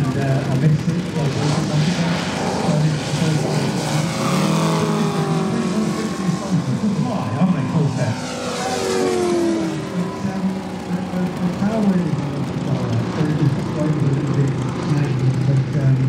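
Giant-scale RC warbirds' Moki radial engines running in flight, one making a fly-by with its pitch falling as it passes, about halfway through.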